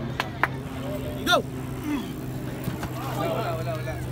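A referee shouts "Go!" once, sharply, to start an arm-wrestling bout, and men's voices call out a couple of seconds later, over a steady low hum.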